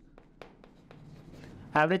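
Chalk writing on a blackboard: faint scratching with a few short sharp taps as the chalk strikes the board.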